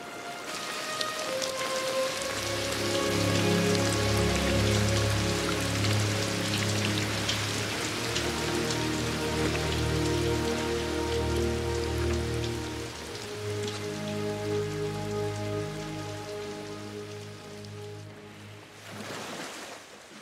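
Lush film score of long held chords that swell in over the first few seconds and fade away over the last several, over a steady hiss of sea water.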